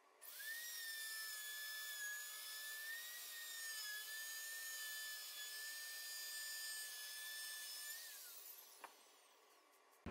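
Handheld plunge router running steadily with a high whine while cutting a 3/16-inch-deep groove in 3/4-inch maple plywood along a clamped level as a guide. About eight seconds in it is switched off and its whine falls away as the motor spins down, followed by a small click.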